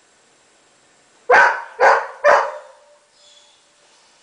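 Golden retriever barking three times in quick succession, about half a second apart.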